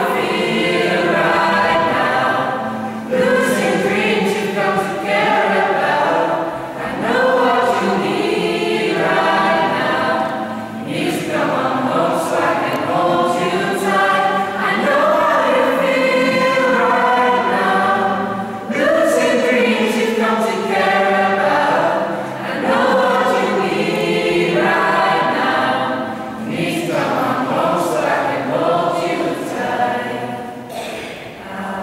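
A group of young women and men singing together as a choir, in phrases a few seconds long with brief breaks between them.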